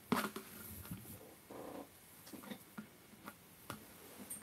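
Quiet handling noise of a crocheted piece and its chain cord being rubbed and tugged as the cord is threaded through the stitches, with scattered small clicks. There is a sharp knock at the start and a short rasp about a second and a half in.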